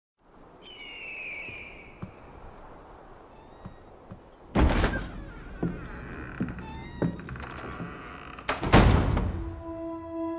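Two heavy, reverberant thuds, the first about four and a half seconds in and the louder one near the end, with a few lighter knocks between them. They sit over a faint steady hiss, with a brief falling high-pitched cry near the start. Held musical tones begin in the last second.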